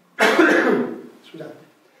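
A man clears his throat with a sharp cough about a quarter of a second in, followed by a smaller second one.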